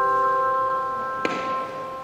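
Handbells ringing: a chord of several bell tones sustaining and slowly fading, with one more note struck about a second and a quarter in.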